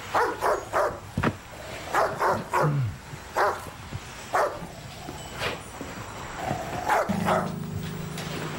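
A dog barking repeatedly, about a dozen short barks at uneven intervals. A low steady hum starts near the end.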